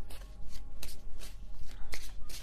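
A tarot deck being shuffled by hand, a soft riffling of cards broken by a few sharp card snaps, about one a second.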